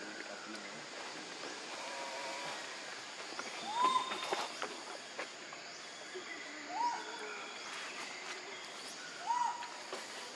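Three short animal calls, each a tonal note that rises, holds and falls, a few seconds apart, over a steady forest background hiss.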